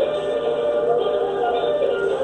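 Music with a melody of long held notes that step up and down in pitch.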